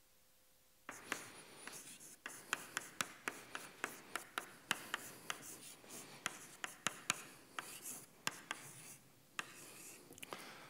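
Chalk writing on a blackboard: scratchy strokes punctuated by sharp taps as the chalk strikes the board, about two taps a second. It starts about a second in after a near-silent moment and stops shortly before the end.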